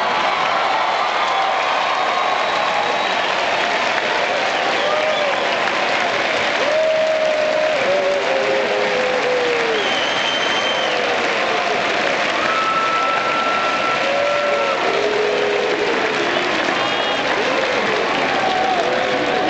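Sustained applause from a large crowd, steady throughout, with brief scattered voices calling out over the clapping.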